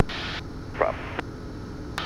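Steady low drone and hiss of a Cessna 172's cockpit heard through the headset intercom, with a brief hiss at the start that cuts off about half a second in, and a faint click a little after a second.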